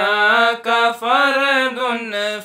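A solo voice chanting a verse of an Arabic qasida, in long held notes that slide and waver in pitch, with short breaths about half a second and a second in.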